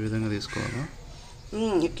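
A crow cawing, three calls in about two seconds.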